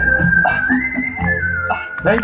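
Live stage band playing an instrumental stretch of a Hindi film song through the PA: a drum beat with hi-hat and a high, whistle-like lead line held on one note, stepping up and then back down. The music stops at the very end.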